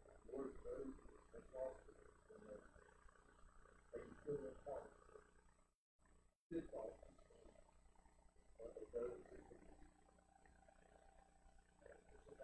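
A man's voice, faint and muffled, speaking in low phrases: a spoken prayer picked up only weakly. The sound cuts out to dead silence for under a second about six seconds in.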